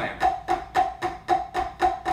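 Alternating flams played with wooden drumsticks on a rubber-disc practice pad, in an even rhythm of about four strokes a second.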